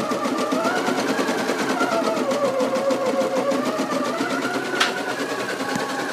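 Pfaff 300e embroidery machine running after being restarted, stitching out a design: rapid, even needle strokes over a motor whine that wavers in pitch as the hoop moves.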